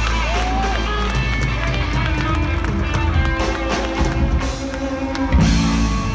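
Live rock band playing electric guitars, bass guitar and drums through a PA system, with a loud accented hit about five seconds in.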